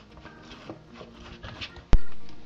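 Hands kneading wheat-flour dough in a plastic tub: soft pressing and slapping strokes of the dough, then a single sharp thump near the end, the loudest sound.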